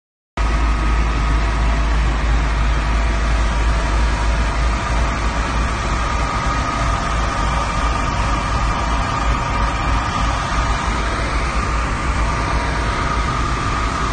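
Fire engines running steadily: a loud, deep engine drone with a steady high whine over it.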